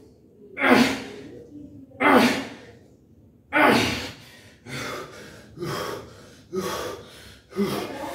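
A man's forceful breaths out, one with each repetition of a barbell upright row: about seven sharp exhalations, coming faster toward the end of the set.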